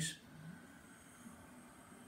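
A man slowly inhaling through the nose in ujjayi (victorious) breath, a faint, steady breathy hiss made by narrowing the back of the throat.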